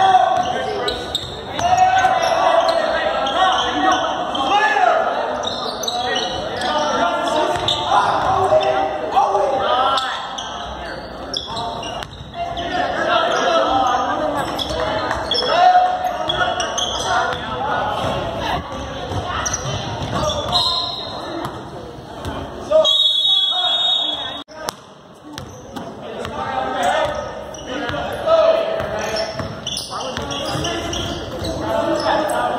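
A basketball dribbling and bouncing on a hardwood gym floor during play, with players' and spectators' voices echoing in the large gym and a couple of brief high squeaks about two-thirds of the way through.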